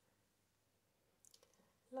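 Near silence, broken a little over a second in by a few faint, short clicks, before a woman begins speaking right at the end.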